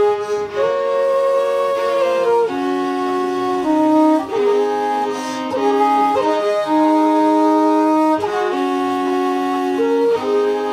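Fiddle and flute playing an Irish traditional tune together, a slow-moving melody of held notes that change about every half second to a second and a half.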